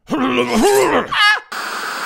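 A man's voice groaning and wailing with sliding pitch, climbing to a high wavering cry, then cut off about one and a half seconds in by a steady burst of static hiss.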